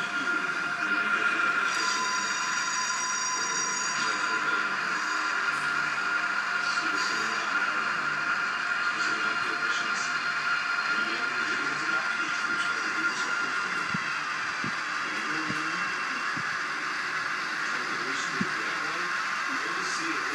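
A Renfe AVE high-speed train moving along a station platform, heard as played back through a computer's small speakers: a steady hum with a thin continuous whine.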